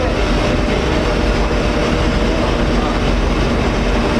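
Steady drone of ship's deck machinery with faint held tones, mixed with rumbling wind noise on the microphone.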